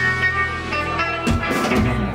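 Live band playing without vocals: strummed acoustic guitar and hollow-body electric guitar over drums, with notes held steady.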